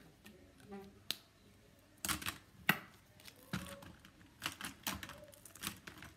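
Irregular sharp clicks and taps, several over a few seconds, from markers and plastic stencils being handled and set down on the table close to the phone.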